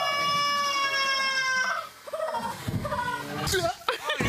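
A person's long, high-pitched yell held at one steady pitch until nearly two seconds in, followed by shorter broken cries and a quick rising whoop near the end.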